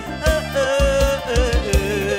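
Live Isan mor lam toei band music: a male voice holding long, wavering notes over a steady drum beat of about four beats a second.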